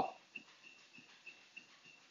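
A dog whining faintly, a thin high-pitched whine broken into short repeated pulses, with a few faint ticks; the whine of a dog eager to get on the treadmill.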